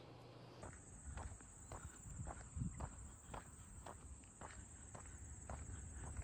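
Footsteps through grass, irregular and about two a second, starting about half a second in, over a low wind rumble and a steady high whine.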